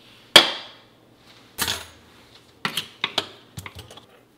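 Metal clicks and clinks of stainless-steel kitchen utensils against a wall-mounted stainless kitchen hanger rail and its hooks: one loud sharp click with a short ring near the start, then a clatter and a quick run of lighter clicks as a pair of tongs is hung on a hook.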